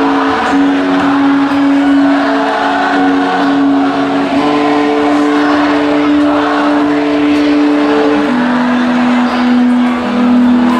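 Live rock band playing through a concert PA, with electric guitar and long held notes that shift to a new pitch about every four seconds.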